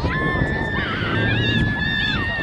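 Young children shouting and shrieking on the field, their high-pitched voices overlapping, with one long held yell lasting over a second that drops off at the end.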